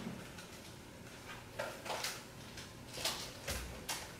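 Paper and sticker sheets being handled: a few short rustles and light taps, with a dull thump about three and a half seconds in.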